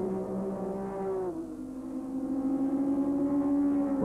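Several racing saloon cars' engines running hard as they approach. There is one steady, high engine note that drops a step in pitch about a second in and then holds.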